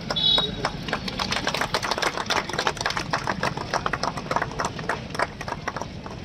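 A string of firecrackers going off, a rapid irregular run of sharp cracks, several a second.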